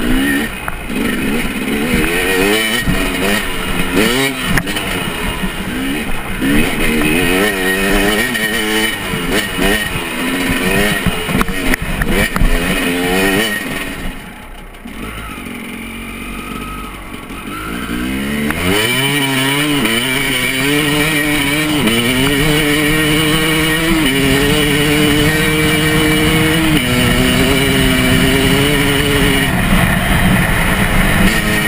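KTM 250 EXC enduro motorcycle engine under way, its pitch rising and falling quickly with the throttle for the first half. It eases off and goes quieter around the middle, then accelerates hard, shifting up through the gears about three times near the end.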